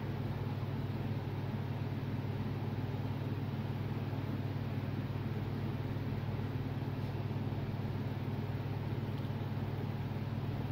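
Steady low mechanical hum, like a running fan or motor, unchanging throughout with no other events.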